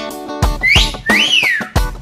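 A two-note wolf whistle, the first note sliding up and the second sliding up then falling away, over strummed guitar music.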